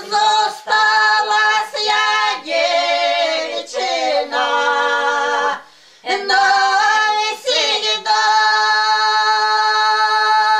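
Three elderly village women singing a traditional folk song together without accompaniment, in phrases with a short breath break about six seconds in, ending on a long held note.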